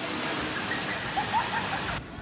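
Water rushing and splashing down a water slide as a rider comes through it, a steady rush of noise.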